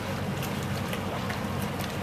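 Steady hiss of wet snow and icy rain falling over a canal, with a low engine hum from boat traffic on the water.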